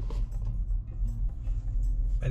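Low, steady rumble of a car heard from inside the cabin as it moves slowly.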